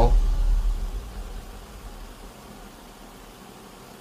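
A deep low boom dies away over about the first second and a half, leaving a steady faint hiss.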